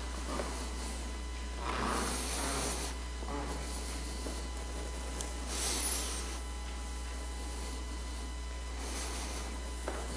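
Quiet room tone with a steady low hum, broken twice by brief rustling or shuffling noises, about two seconds in and again near six seconds.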